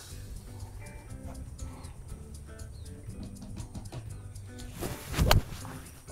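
Soft background music with short sustained notes, and about five seconds in a single sharp strike of a golf club hitting a ball off the tee.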